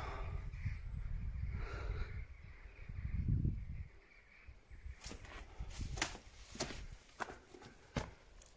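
Footsteps on the stone and rubble floor of a ruined castle: a low rumble for the first few seconds, then five or six sharp separate steps or knocks in the second half.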